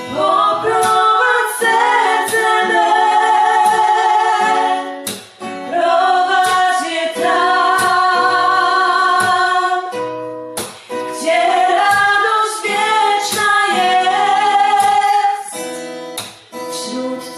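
A woman singing a slow song with acoustic guitar accompaniment, in three long phrases with short breaks between them.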